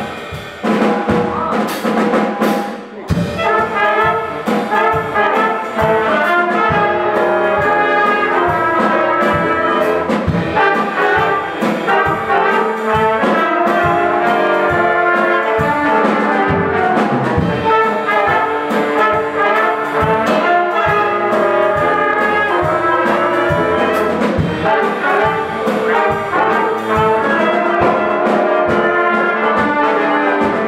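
Student jazz combo playing together: trumpets, trombone and baritone, tenor and alto saxophones over a drum kit. After a short stretch led by the drums, the full horn section plays from about three seconds in.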